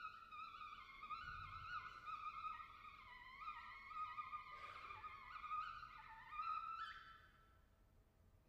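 English horn and oboe playing a soft, wavering high duet line of contemporary music, which climbs and then fades out about seven seconds in.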